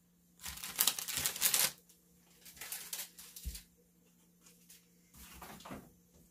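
Rustling and crinkling of craft materials handled on a table. The loudest stretch lasts about a second and a half near the start, then there are quieter rustles and a soft thump about three and a half seconds in.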